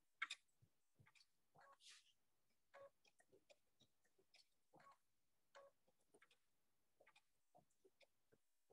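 Very faint, irregular ticks and clicks of a sewing machine taking slow blanket stitches around an appliqué circle.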